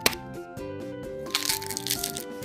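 A quail egg's shell cracked with one sharp click just after the start, then a second or so later a crackling as the shell is broken open and the egg drops into a small glass bowl, over background music.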